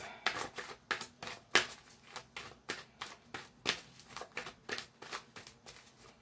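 A deck of tarot cards being shuffled by hand: a steady run of short card snaps, about three a second.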